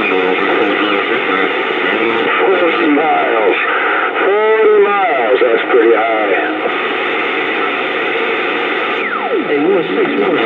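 Uniden Bearcat CB radio on channel 28 receiving distant stations on skip: voices buried in static, too garbled to make out, come and go, loudest in the middle. A whistle falls sharply in pitch near the end.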